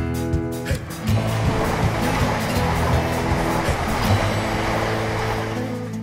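Intro theme music with a beat and held notes. About a second in, a rushing swell of noise like a passing train joins it and fades away over the next few seconds.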